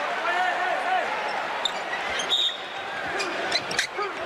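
Court sound from an indoor basketball game: crowd voices calling out, a short high squeak about halfway through, and a basketball being dribbled near the end.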